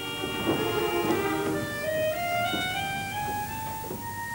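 Opera orchestra playing a slow introduction of held notes; in the second half a melody climbs step by step.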